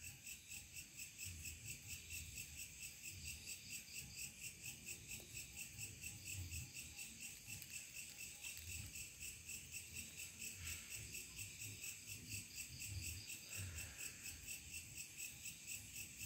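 Crickets chirping in a faint, steady, high-pitched chorus of rapid even pulses.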